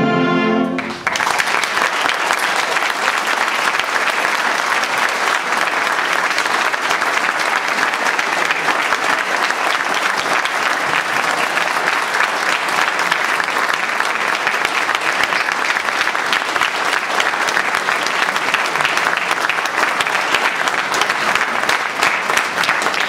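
A concert band's final held chord cuts off about a second in. Steady audience applause follows.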